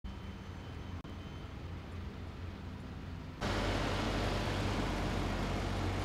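Diesel engine of a hydraulic excavator running steadily, faint at first with a low hum; about three and a half seconds in it jumps louder and rougher, heard close up.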